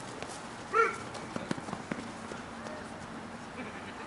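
One short shout from a player about a second in, then scattered footfalls and thuds of players running on a dirt softball infield.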